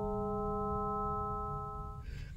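An additive-synthesis tone made of sine-wave partials at inharmonic multiples of a 200 Hz fundamental, giving a bell-like sustained chord of pure tones. One upper partial dies away about half a second in, and the rest fade and stop near the end.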